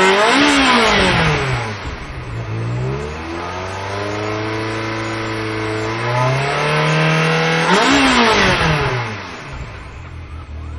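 Ferrari 360 Spider's 3.6-litre V8 engine revving. A sharp rev that rises and falls comes about half a second in, and a second one near the end. Between them the engine note climbs and then holds steadier.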